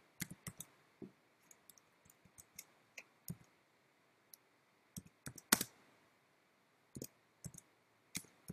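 Computer keyboard being typed on slowly: single key clicks and short runs of keystrokes, unevenly spaced with pauses of a second or more between them, one harder key strike about five and a half seconds in.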